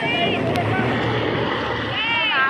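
Steady rushing noise of wind and rain on a phone's microphone, with a short high call from a voice right at the start.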